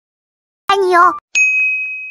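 A brief high-pitched vocal sound with a wavering pitch, followed about half a second later by a bright electronic ding sound effect that rings out and fades slowly.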